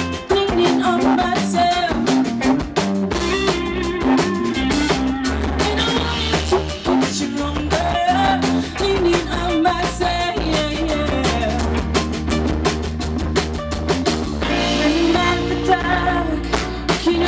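A live rock band playing: electric guitars, bass guitar and a drum kit keeping a steady beat.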